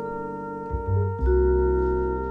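Jazz recording: vibraphone chords ringing over acoustic double bass, moving to a new chord a little over a second in.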